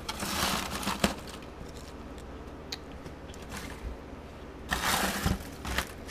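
Pepper plant leaves rustling and crinkling as hands work through the foliage, with sharp snips of small scissors cutting off flower buds, one about a second in. A second stretch of rustling and snipping comes near the end.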